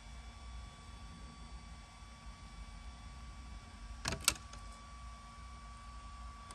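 Carbon fiber dashboard trim piece being fitted and pressed onto a car's dash, with two sharp clicks about four seconds in, a third of a second apart, over a faint steady hum.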